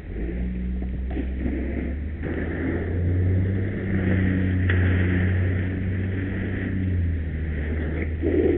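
Fire engine's engine running steadily under pump load while hose streams flow, with a steady hiss of water through hose and nozzle. The engine note grows a little louder about three seconds in.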